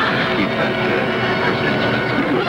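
Studio audience laughter after a punch line, with orchestral closing music coming in under it.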